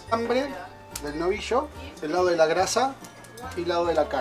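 Speech that the recogniser did not write down, over background music.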